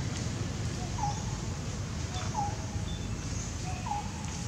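Three short animal calls, one about every second and a half, each a brief hooked note, over a steady low background rumble.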